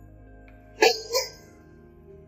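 A man's voice giving two short, breathy vocal sounds a quarter-second apart, about a second in, over soft background music.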